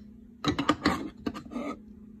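Wooden spoon scraping and knocking against a cooking pan as it scoops up the last of the sauce. There is a quick run of clicks and scrapes from about half a second in until near the end.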